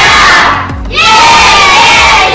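A group of young men and women shouting together in unison, twice: a short shout at the start, then a longer one from about a second in. Background music runs beneath.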